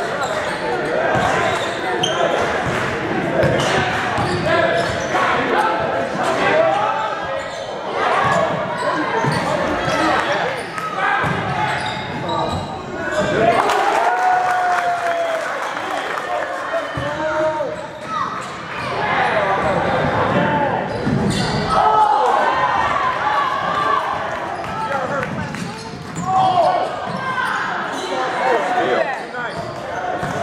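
Basketball dribbled on a hardwood gym floor, its bounces mixed with the voices of players and onlookers echoing in a large gymnasium.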